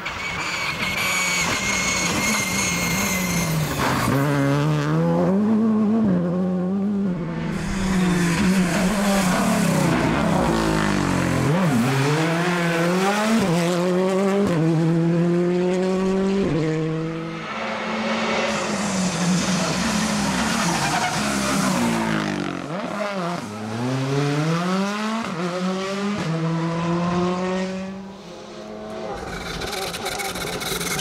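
Group R5 rally cars, among them a Škoda Fabia and a VW Polo, each pass in turn under hard acceleration. The engine note climbs in pitch and drops back at each gear change, over and over.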